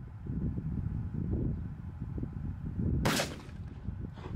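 A single 12-gauge shotgun shot about three seconds in, firing a Grimburg HP68 nylon-and-copper less-lethal slug. Under it runs a low, uneven rumble of wind buffeting the microphone.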